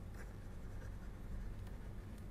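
Faint scratching and light tapping of a stylus writing on a tablet screen, over a low steady background hum.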